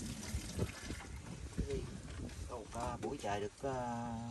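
Background voices that the recogniser could not make out: a few short utterances in the second half, then one voice holding a long, drawn-out note near the end.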